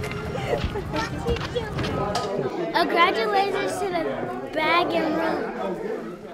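Overlapping voices of several people chatting, none of it clear enough to make out as words.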